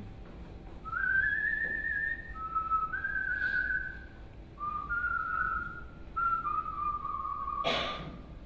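A person whistling a tune in long held notes that step up and down in pitch, with a single sharp knock near the end.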